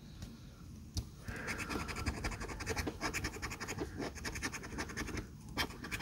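A coin scratching the coating off a paper scratch-off lottery ticket in a quick run of short strokes, after a single click about a second in; the scratching stops briefly near the end, then one more stroke.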